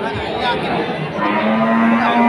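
A cow mooing: one long, steady-pitched call that begins a little past halfway and is still going at the end.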